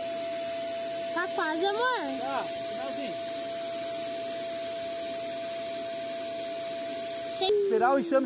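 Bee vacuum's motor running with a steady whining hum as it sucks honeybees from a swarm into its box; the hum stops about seven and a half seconds in.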